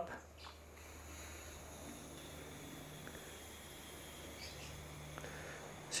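Faint steady hiss of a CO2 cartridge emptying through a push-on inflator head into a bicycle tyre as the tyre fills.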